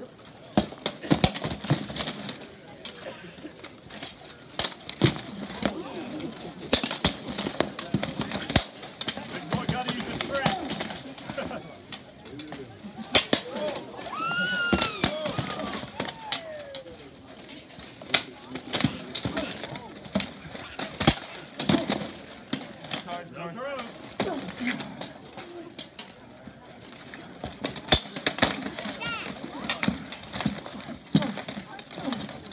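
Armored combat bout: blunted steel weapons striking shields and plate armour in sharp, irregular clangs and knocks, with spectators' voices and shouts in between.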